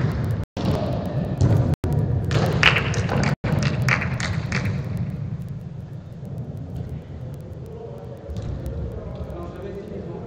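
Players' voices calling and shouting in a large, echoing indoor football hall, busiest in the first half, over a steady low rumble with occasional thuds. The audio cuts out briefly three times near the start.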